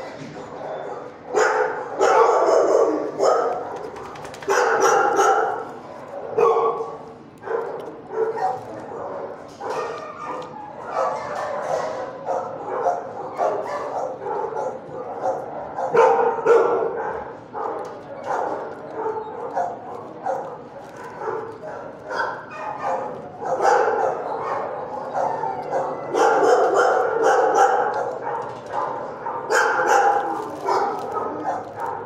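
Dogs barking repeatedly in a shelter kennel, with some yips, the barks dense and overlapping and loudest in several surges.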